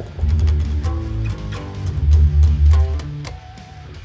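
Electric guitar played through the Antelope Orion Studio's built-in distortion amp simulation: a short phrase of heavy, low distorted notes that dies away near the end. The distorted tone is one the player himself calls not really good.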